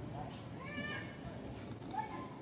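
Infant macaque giving a short, high-pitched call of about half a second, a little under a second in, then a brief second call at the very end.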